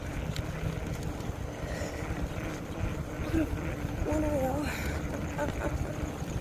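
Low wind noise on the microphone of a camera carried on a moving bicycle, with a faint voice briefly heard about four seconds in.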